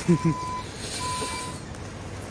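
A vehicle's reversing alarm beeping twice: two steady half-second electronic tones, over the low hum of street traffic.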